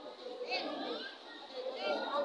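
A crowd of young schoolgirls chattering and calling out at once. A few high-pitched child voices stand out above the hubbub, about half a second in and again near the end.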